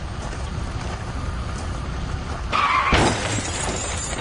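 A car crash: a sharp crash with shattering about three seconds in, over a steady low rumble.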